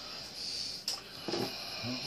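Kitchen knife knocking once against a hard surface, a single sharp click about a second in, with a faint muttered voice near the end.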